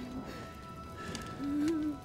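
Film score music holding soft sustained notes. A short, low voice sound comes about one and a half seconds in and is the loudest moment.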